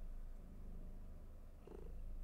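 Domestic cat purring, a low steady rumble.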